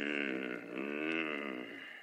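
A bear's growl in a radio play: one long, low growl, voiced by a person, that wavers in pitch and fades near the end.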